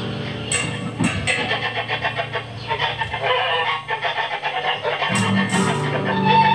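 Free-improvised industrial noise music: electric guitar with effects, acoustic bass guitar and sampled electronic noise in a dense, clattering texture with a few sharp hits. A low drone drops out just after the start and returns about five seconds in.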